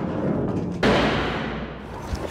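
A sudden heavy crash about a second in, from the crash-test pendulum swinging at the low aluminium-and-plywood electric car in a side-impact test, dying away over about a second above a low rumble.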